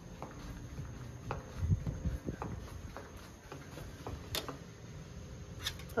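Soft footsteps on a tiled floor, then light clicks and one sharp click about four seconds in as a plastic key card is held against an electronic hotel door lock.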